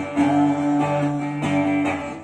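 Acoustic guitar strummed in chords, a steady run of strums with the notes ringing between them.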